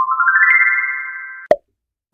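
Synthesized chime sound effect marking the end of the countdown: a quick run of rising notes that rings on and fades over about a second and a half, followed by a short pop.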